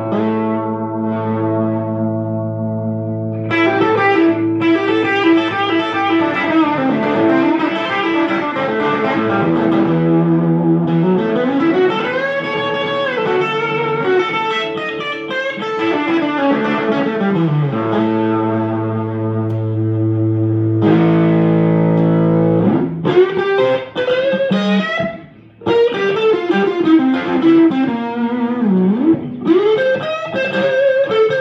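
Early 1965 Gibson ES-335 semi-hollow electric guitar with Patent-number humbucker pickups, played clean through an amplifier. It plays ringing held notes and chords with slow string bends, and lead lines pause briefly late on.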